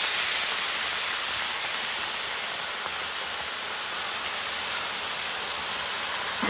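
Hot water poured from a kettle into a very hot frying pan around a seared flank steak, hissing and sizzling hard as it flashes to steam and then bubbling in the pan. The hiss eases a little over the first few seconds.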